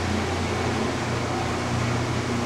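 Steady low hum under an even hiss, the sound of background machinery running, with no sudden events.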